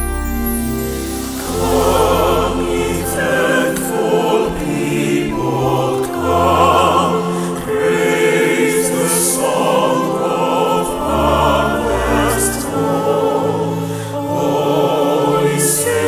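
A choir singing a hymn in harmony, coming in about a second and a half in over the close of an organ introduction.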